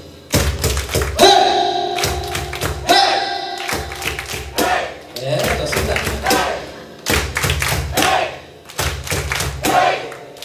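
Live band music: bass guitar notes under repeated percussive thumps, with a voice held and sung into the microphone in places.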